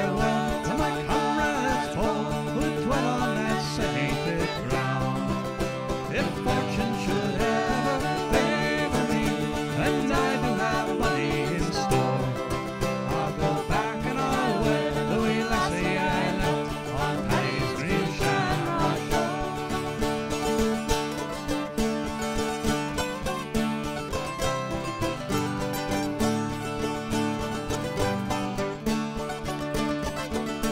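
Acoustic string band of steel-string guitar, banjo and mandolin playing an instrumental break in an Irish folk ballad, with a wavering plucked melody over a steady strummed rhythm.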